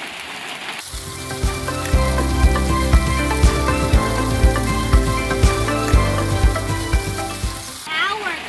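Background music with a steady beat, about two beats a second, that comes in about a second in and stops just before the end.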